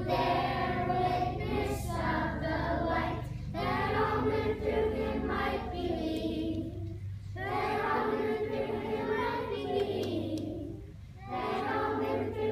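Children's choir singing together in phrases of a few seconds, with short breaks for breath between them, over a low steady hum.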